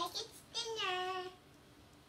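A young boy's voice during pretend play: a couple of short vocal sounds, then one sung, drawn-out note about half a second in that dips in pitch and is held for under a second.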